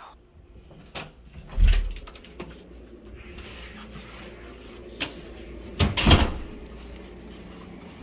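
A hotel room door being opened and let close: a latch click, a loud thud as the door opens, a few smaller clicks, and then, about six seconds in, a second loud thud as the door shuts and latches.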